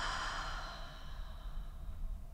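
A person letting out a long, breathy sigh. It is strongest at the start and fades away over about a second and a half.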